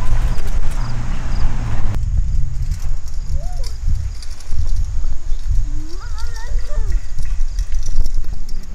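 Wind buffeting the microphone as a loud, uneven low rumble, with short wavering pitched calls rising and falling in the background about three and a half seconds in and again around six to seven seconds in.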